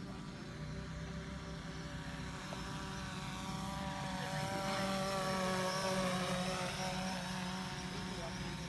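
Small quadcopter drone hovering close by, its propellers giving a steady whine of several tones that grows louder toward the middle and eases a little near the end.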